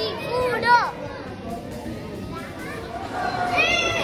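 Children's voices: a few short, high shouts in the first second, quieter chatter behind, then another high squeal near the end.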